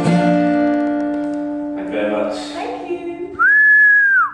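Final strummed chord on an acoustic guitar ringing out and fading, followed near the end by a loud, steady, high-pitched whistle.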